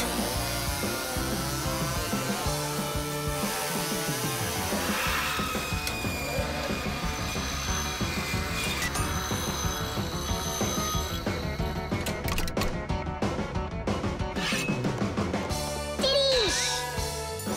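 Cartoon sound effect of a small spinning circular saw cutting through a metal nail, a steady high grinding hiss with background music underneath.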